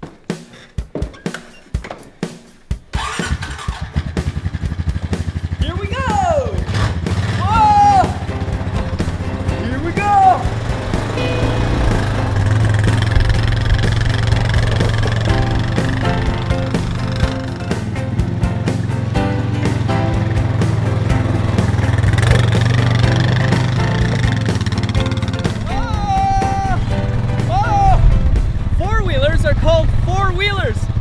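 A four-wheeler ATV's engine starting about three seconds in and then running steadily as the quad is ridden, under background music with a few short whooping calls.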